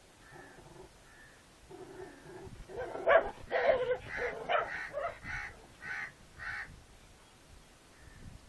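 Harsh animal calls: faint at first, louder from about three seconds in, ending in a run of evenly spaced calls about every half second.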